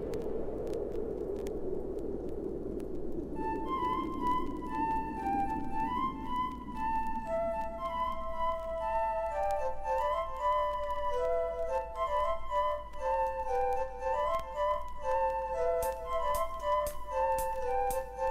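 Instrumental music: a low held chord fades away over the first few seconds, then a melody of clear, flute-like high notes in two interweaving lines enters about three seconds in and carries on.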